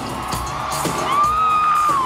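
Live pop concert music with a steady dance beat over the PA, recorded from the audience. About halfway through, a loud high-pitched whoop comes in, holds, and slides down in pitch at the end.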